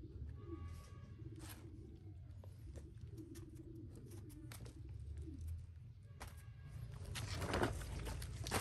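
Doves cooing faintly in the background, with a few knocks from brushcutters being handled and set down; the loudest knock comes near the end.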